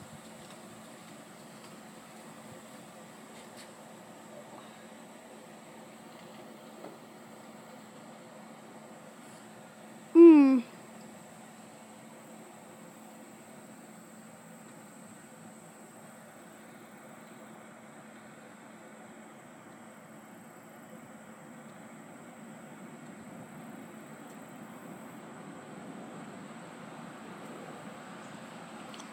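Faint steady outdoor background noise, broken once about ten seconds in by a short, loud call that falls in pitch.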